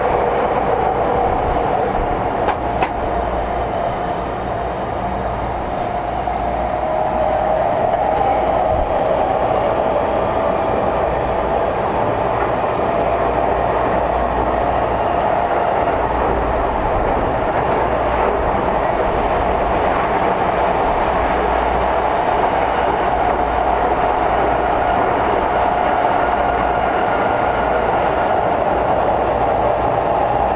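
Tokyo Metro 10000 series electric train running on the line, heard from inside the car: a steady rumble of wheels on rail with a pitched whine that rises a little over the first several seconds and then holds, and a single sharp click about three seconds in.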